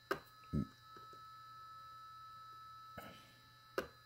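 Malectrics Arduino spot welder firing pulses through hand-held probes, welding nickel strip onto lithium-ion cells: a sharp snap just after the start and another near the end, with a duller knock about half a second in and a faint click around three seconds.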